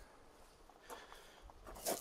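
Faint handling noises: a few light clicks, then a short rustling scrape near the end as the beekeeper bends down beside the hive.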